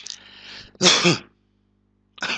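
A man clearing his throat: a short breathy rush, then about a second in one loud, brief throat clear with a falling pitch.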